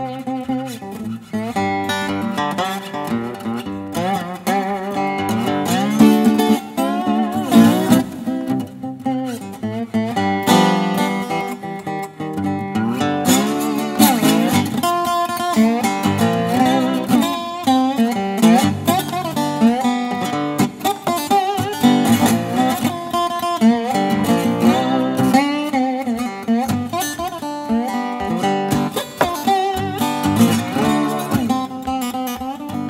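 Solo acoustic Weissenborn-style lap steel guitar, built by luthier Michael Gotz, playing a blues with plucked notes and chords. Its notes glide up and down in pitch under the slide bar.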